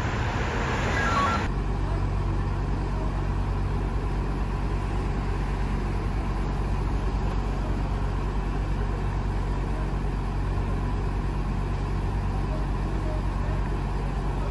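A heavy truck engine idling steadily, a low even hum that holds without change. It sets in abruptly about a second and a half in, after a short stretch of street noise.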